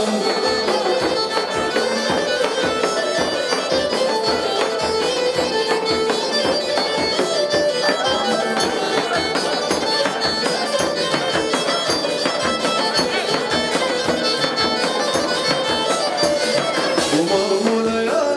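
Traditional folk dance music: a large two-headed davul drum beaten in a fast, steady rhythm under a shrill, bagpipe-like reed-pipe melody.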